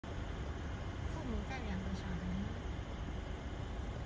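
Car engine idling with a steady low rumble. About a second in, a person's soft, drawn-out voice glides down in pitch and trails off.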